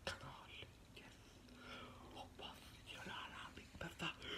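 A man whispering quietly, with a few sharp clicks scattered through.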